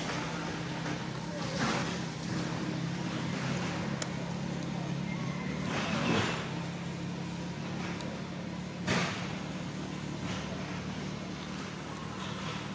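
A steady low motor hum, like an idling engine, with a few short swells of noise over it about a second and a half, six and nine seconds in.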